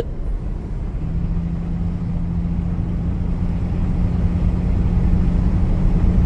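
Chrysler CM Valiant's 265 Hemi inline six running while the car drives along, heard from inside the cabin with road rumble. A steady engine tone sets in about a second in and the sound grows slightly louder.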